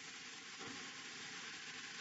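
Faint, steady hiss of the recording's background noise, with no other sound standing out.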